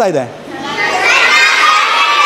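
A large group of children shouting together in reply, many high voices at once, swelling about half a second in and held as one long drawn-out call.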